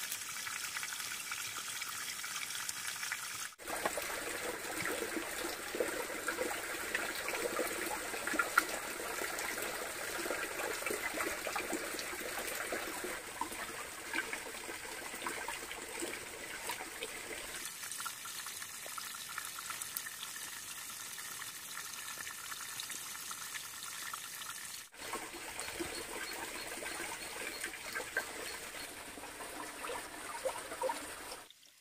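Wet mud plaster being slapped, pressed and smeared by hand onto a bamboo-lattice wall, a wet squelching with small crackles, over a steady rush of running water. The sound breaks off briefly three times where the footage is cut.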